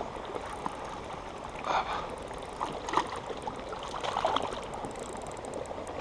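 A hooked fish splashing at the water's surface as it is drawn toward a landing net, a few short irregular splashes over a steady rushing background.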